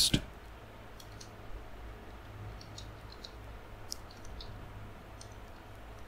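Faint, irregular clicks of a computer keyboard as a line of code is typed, about ten keystrokes over the first four or five seconds, over a low steady hum.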